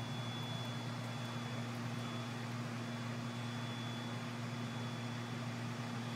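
Steady hum of a stopped light rail car's ventilation and electrical equipment heard from inside the car, a low drone with a faint high whine over it.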